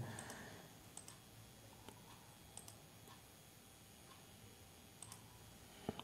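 Near silence broken by a few faint computer mouse clicks, several in close pairs, as presentation slide animations are advanced.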